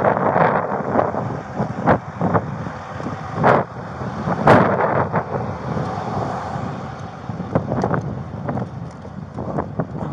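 Body-worn camera microphone picking up irregular knocks and rubbing as the wearer walks, the loudest a little after three and four and a half seconds in, over wind noise on the microphone and a steady background rumble.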